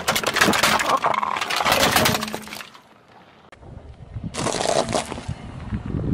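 A car tyre rolling over a plastic toy front loader, the hard plastic cracking and snapping in a dense run of cracks for about two and a half seconds. After a short pause, a second burst of cracking and crunching comes near the end.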